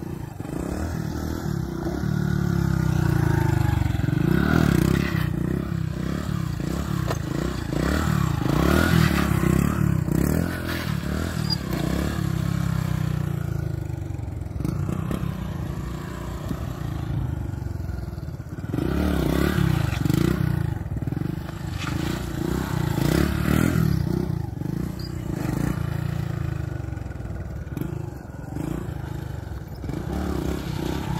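Small motorcycle engine revving up and down repeatedly while the bike is ridden in wheelies; the pitch climbs and falls several times.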